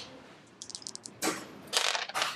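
Two small dice rolled onto a game mat: a few light clicks, then two short rattling bursts as they land and tumble, the second near the end.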